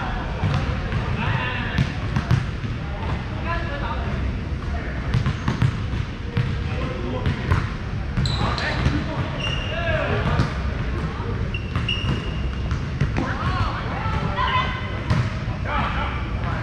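Echoing gym ambience: many players' voices talking and calling at once across a large hall, with a ball bouncing and being struck on the hardwood now and then, and a few short high squeaks.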